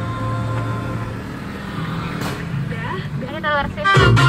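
Steady low hum of a car heard from inside the cabin while moving in traffic, with a radio playing faintly. A voice comes in briefly near the end.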